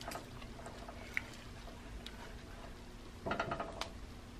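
Faint sound of almond milk being poured into a cooking pot, with a short run of clicks and clatter from the pot near the end.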